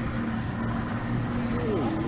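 Boat engine running at a steady drone, with a voice starting near the end.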